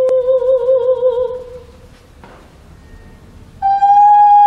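Female operatic voice singing: a held note with vibrato that fades away about a second and a half in, a short quiet pause, then a loud, higher sustained note begins near the end. A brief click sounds at the very start.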